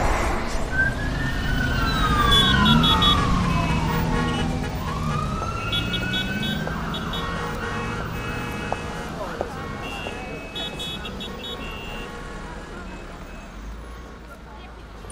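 City street ambience: a low traffic rumble with a siren wailing, its pitch sweeping down and then back up, the whole gradually fading out.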